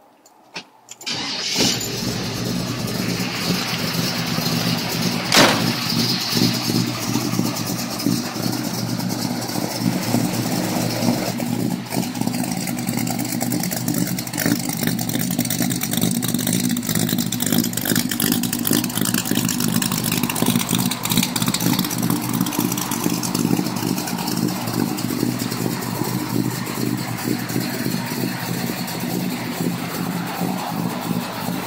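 A 383 cubic-inch V8 with chrome headers and 3-inch dual exhaust cranks and catches about a second in, then idles steadily. A single sharp knock stands out about five seconds in.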